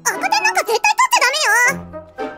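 A girl's high-pitched, shaky voice delivering a nervous line, its pitch wobbling up and down in the second half, over light background music.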